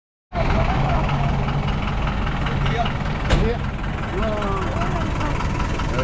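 A vehicle engine idling steadily under a low outdoor rumble, with faint voices in the background and a single sharp click about three seconds in.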